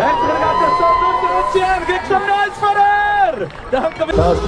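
An announcer's voice over a public-address system holding one long drawn-out call that falls away and ends a little after three seconds in, with crowd noise underneath.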